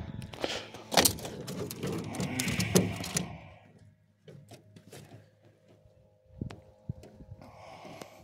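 Knocks and clicks of a bluegill being reeled in, landed and handled in an aluminium boat, busiest in the first three seconds, then fainter taps with one knock near the end.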